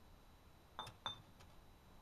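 Two light clinks of fired stoneware pots touching as they are handled, about a second apart, the first with a brief high ring.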